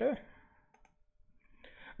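The tail of a man's spoken word, then a few faint clicks and a short breath just before he speaks again.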